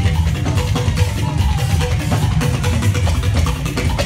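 Loud live band music with drums and bass guitar playing a steady, danceable beat.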